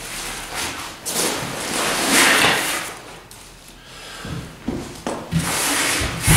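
Rucksack fabric rustling and rubbing as the pack is handled and pressed flat on a tabletop, in three swells of a second or so, then a few low thumps against the table in the second half.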